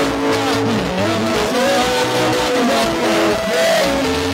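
Live church band music: a melody line that slides slowly up and down in pitch, over steady bass notes.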